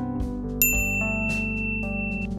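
Background music with one bright ding about half a second in, ringing on for over a second: the notification-bell chime of an animated subscribe-button end card.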